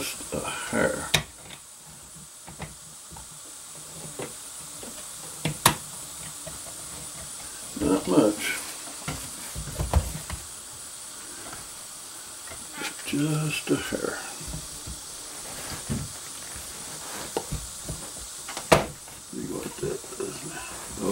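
Handling noise at a wooden shooting rest as its support pin is raised and the rifle is settled onto it: a few sharp clicks and knocks, the loudest about six seconds in and near the end, with a dull knock in between and some low muttering.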